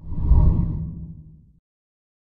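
A deep whoosh transition sound effect accompanying a TV channel's animated logo. It swells within the first half second and fades away by about a second and a half.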